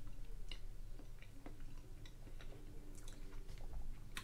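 Faint chewing and mouth sounds of a man eating a mouthful of soft instant mashed potato, with a few small scattered clicks.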